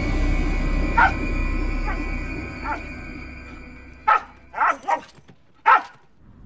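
An Australian cattle dog barking in short barks: a few faint ones at first, then four louder barks in the last two seconds.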